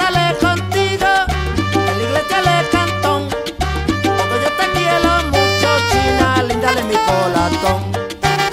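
Salsa band playing an instrumental passage: a stepping bass line and percussion under held melodic lines, with no vocals.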